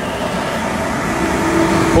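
Big exhaust fans blowing hot air out through louvered wall vents, a steady rushing noise.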